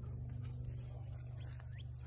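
Quiet outdoor ambience: a steady low hum, with a few faint, short rising bird chirps toward the end.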